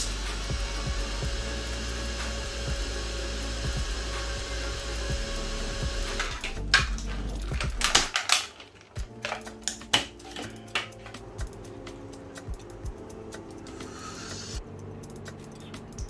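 Small electric pump and computer cooling fan of a homemade water-cooled straw running with a steady hum, which cuts off suddenly about halfway through. Then come scattered clicks and knocks of handling.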